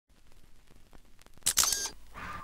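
Opening of a dance remix: a string of faint clicks, then a sharp, bright, hissing burst about one and a half seconds in, with a camera-shutter-like character.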